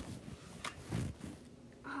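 Quiet handling noise from a handheld camera being swung around: a couple of short clicks and a soft low bump.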